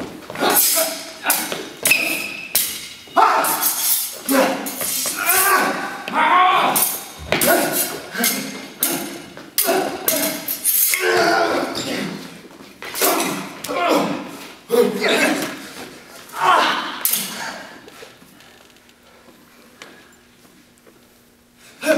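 Stage combat with court swords: quick, light blade clashes with a ringing ping, feet stamping on a wooden floor, and the fighters' wordless shouts and grunts between exchanges, echoing in a large hall. The fighting dies down near the end.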